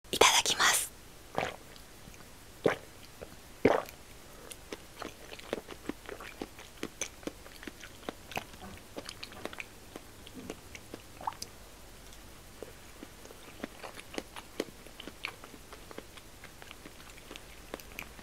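Close-miked eating sounds: a few sharp mouth clicks in the first seconds, then steady chewing with many small wet clicks and lip smacks.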